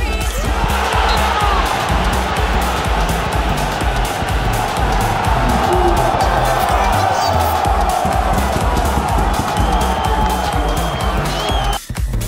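Electronic dance music with a steady beat, mixed over a stadium crowd roaring and cheering as a goal goes in.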